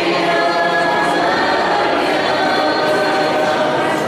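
Church choir singing, with voices holding long notes.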